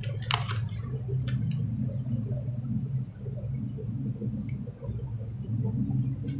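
Paper rustling as a book's pages are handled close to a handheld microphone: a short rustle near the start and two lighter ones about a second and a half in, over a steady low hum.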